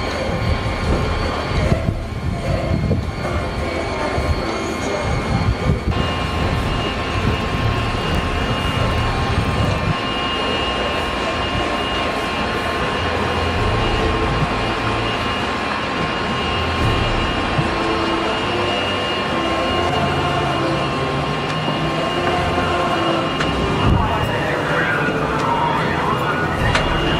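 Steady shipboard noise on a Navy vessel's deck, a low machinery rumble with wind, under indistinct voices. A thin high whine comes in about six seconds in.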